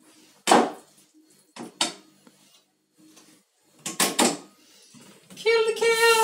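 A few short knocks and clatters of kitchenware as a plastic sieve of lentils is handled over a steel pot. Near the end a kitchen tap starts running, with a held hummed note over it.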